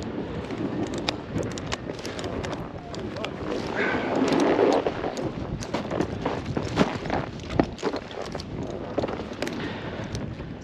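Snow scraping and crunching under a snowboard sliding down a groomed run, with irregular sharp clicks and knocks and wind buffeting the microphone; the noise swells about four seconds in.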